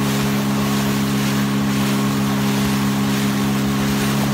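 Outboard motor of a small inflatable boat running at steady cruising speed, a constant drone, under a steady rush of wind and water.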